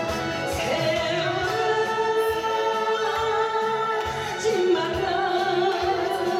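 A woman singing live into a handheld microphone over instrumental accompaniment with a steady beat, holding long notes.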